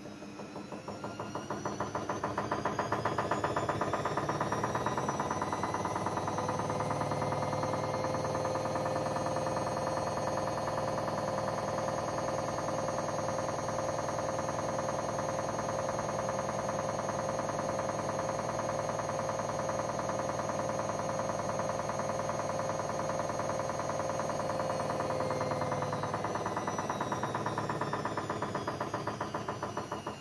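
Haier 7.5 kg front-loading washing machine doing the final spin of its wool cycle at the 800 rpm setting. The motor whine rises as the drum speeds up over the first few seconds, holds steady with a fast pulsing rhythm, then falls as the drum winds down near the end.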